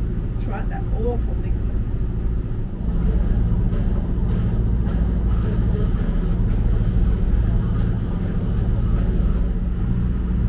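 A steady low motor hum aboard a catamaran, growing a little louder about three seconds in, with faint voices briefly about a second in.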